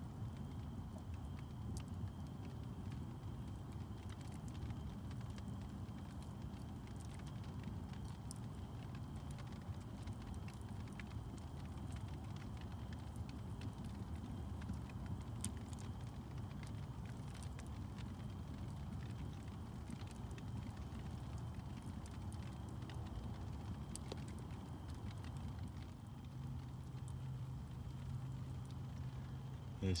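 Light rain falling on a tarp shelter, a steady hiss with scattered small ticks, mixed with a small wood fire burning in an earthen fire pit.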